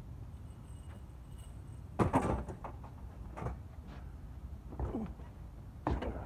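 Clanks and thumps of scrap metal being handled and loaded into the back of an SUV: one loud clank with a short ring about two seconds in, a few lighter knocks after, and a sharp knock near the end.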